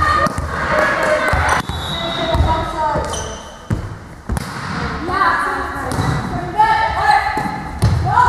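Volleyball players calling out to each other in a large, echoing sports hall, with a few sharp thuds of a volleyball, about three in the first half.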